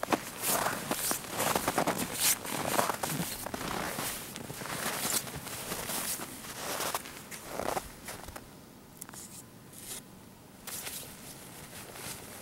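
Footsteps tramping through deep snow at about two steps a second, softer in the last few seconds.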